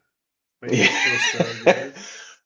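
A man coughing, starting about half a second in, with a sharp burst of cough near the end.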